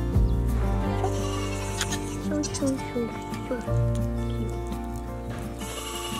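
Nigerian Dwarf goats bleating in several short calls around the middle, over background music with sustained tones.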